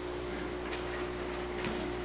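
Steady background hum with a thin steady tone, and two soft clicks about a second apart as a slide projector changes to the next slide.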